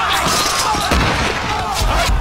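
Battle din: many men shouting and yelling at once over repeated sharp impacts and low booms.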